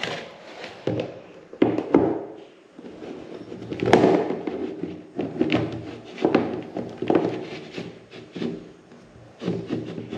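A clear plastic food container knocking and rubbing against a door and a cardboard box on a tiled floor: a series of separate thunks and scrapes, the loudest about four seconds in.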